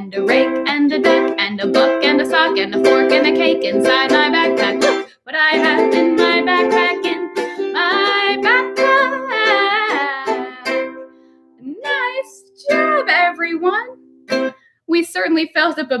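A woman singing a fast cumulative children's song, a long list of items, to a strummed ukulele. The quick strumming gives way after about five seconds to longer held chords, and the song finishes just before the end.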